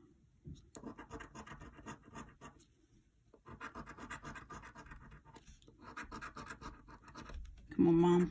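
A coin scraping the coating off a scratch-off lottery ticket, in three spells of rapid scratching with short pauses between them.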